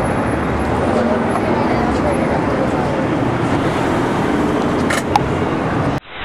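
Steady street traffic noise, with people talking faintly in the background. Two short sharp clicks come about five seconds in.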